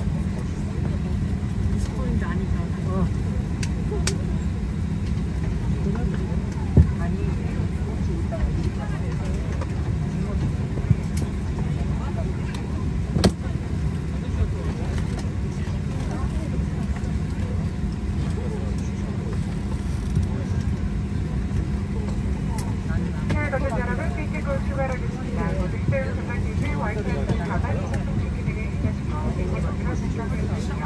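Steady low drone inside a parked airliner's cabin, the air-conditioning and ventilation noise with a constant hum. A few sharp clicks sound, the loudest about seven seconds in, and faint voices come in over the last several seconds.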